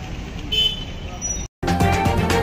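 Street traffic ambience with a brief high toot about half a second in. Then a sudden cut, and loud intro music with a steady beat starts near the end.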